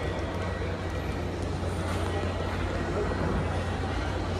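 Steady low hum and background noise of an airport terminal interior, with faint voices.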